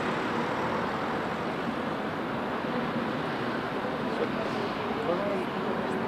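Steady road traffic noise from cars on a city street.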